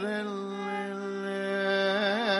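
Carnatic vocal music in raga Vakulabharanam: a male singer holds one long steady note.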